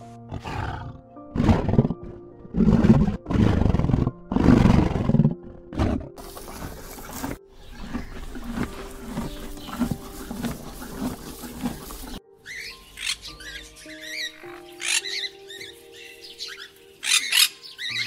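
A big cat roaring about five times in the first six seconds, each roar loud and roughly a second long, then a rough rumbling stretch. After an abrupt cut about twelve seconds in, many short high chirping calls follow, over steady background music.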